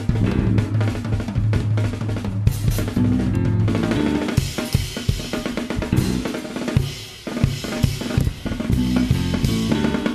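Jazz drum kit played in a busy passage: rapid snare and tom strokes over bass drum and cymbals, with a brief lull about seven seconds in.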